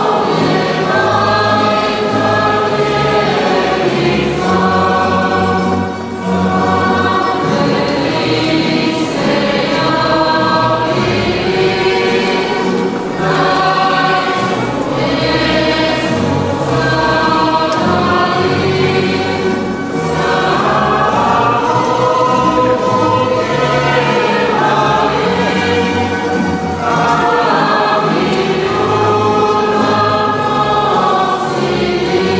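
A youth choir of mostly girls' voices singing a Christmas carol together, accompanied by strummed guitars and a small plucked stringed instrument. The singing goes in phrases with brief breaks between them.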